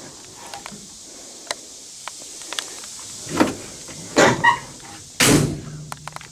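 Steel door of a 1957 Chevy 210 being handled, with a few small clicks and a short squeak, then shut with a thump about five seconds in.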